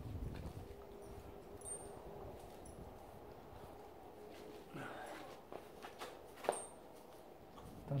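Quiet, soft strokes of a hairbrush through a dog's long, tangled coat, with a few faint scratches and clicks in the second half.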